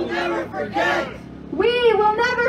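Protest chant shouted through a handheld megaphone by a woman's voice, in a few long, drawn-out syllables.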